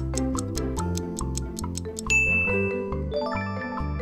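Quiz countdown timer ticking quickly, about five ticks a second, over upbeat background music. The ticking stops about two seconds in with a bright bell ding signalling time up, and a chime follows about a second later.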